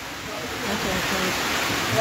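A steady hiss of noise that grows louder about half a second in and holds, with faint voices underneath, during a pause in amplified speech.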